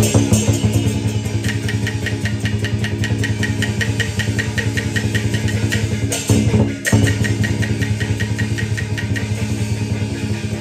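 Xiangju opera accompaniment music: sustained low instrumental notes under a fast, even percussion beat of about four to five clicks a second, with a louder stroke breaking the beat about six and a half seconds in.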